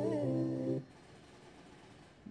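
A voice humming a held note that cuts off suddenly less than a second in, followed by near silence.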